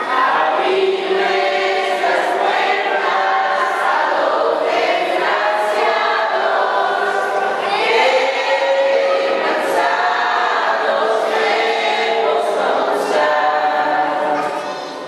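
A crowd of women and children singing a posada song together, many voices holding long notes.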